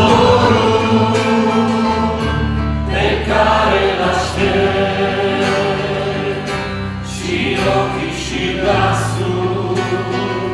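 Live Christian worship song: a man and a woman singing in harmony with a second male singer, over strummed acoustic guitar, electric bass and drums.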